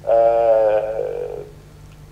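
A man's drawn-out hesitation sound: one held vowel at a steady pitch, lasting just over a second and then trailing off, heard over a telephone line.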